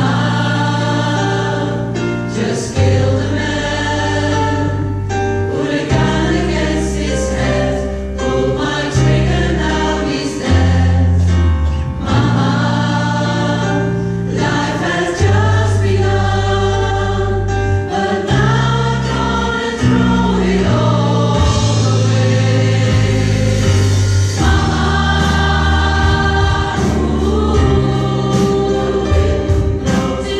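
Large choir singing with orchestral accompaniment in a live concert performance, held bass notes moving with the chord changes beneath the voices.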